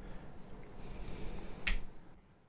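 A single sharp click about one and a half seconds in, over faint low room noise.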